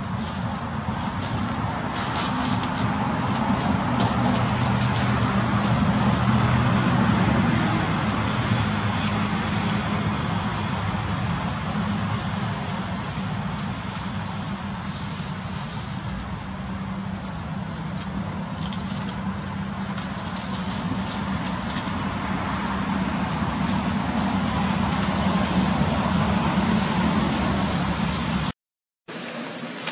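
A motor vehicle engine running nearby over steady road-traffic noise, its low hum swelling and fading in loudness.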